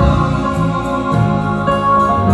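Live gospel praise band playing: electronic keyboard chords over organ, bass guitar and drums, with sustained chords, a moving bass line and light cymbal strokes.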